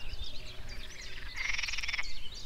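Frogs calling: a pulsed, buzzing trill begins about one and a half seconds in, with faint scattered chirps around it.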